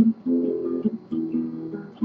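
Classical guitar with nylon strings played fingerstyle: several single plucked notes in a slow arpeggio-like run, each left to ring into the next.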